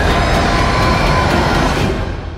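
Loud, dense rumbling wall of horror-trailer sound design, a noisy climax with no clear voice or tune in it, that cuts off suddenly at the end.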